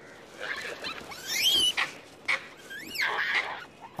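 Hanuman langurs screaming: two shrill screams that rise and then fall in pitch, about a second in and again near the end. The females are screaming as they try to fend off a male attacking their babies.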